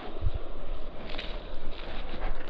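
Wind and handling noise on an action camera's microphone: a steady hiss with low thumps about a quarter second in and a faint click about a second in.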